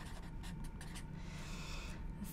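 Pen writing on a pad of paper: quiet scratching strokes, with a longer continuous scratch in the last half second.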